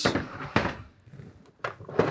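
Hard plastic Milwaukee Packout organizer cases being handled and set down on a workbench: a knock at the start, then sharp plastic clicks about half a second and a second and a half in.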